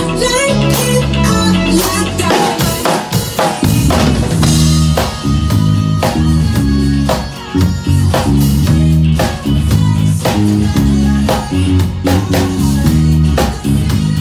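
Electric bass guitar and drum kit playing an upbeat groove together: a steady bass line in repeated notes over kick, snare and cymbal hits, with a brief drop-out about seven seconds in.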